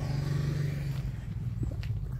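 A car going by, its engine and tyre noise fading after about a second, leaving a low rumble.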